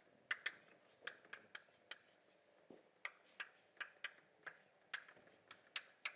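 Chalk tapping and scraping on a blackboard as capital letters are written: a faint, uneven string of sharp clicks, about two or three a second.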